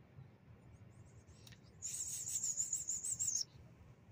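A bird calling: one high, rapidly wavering trill lasting about a second and a half, starting a little under two seconds in.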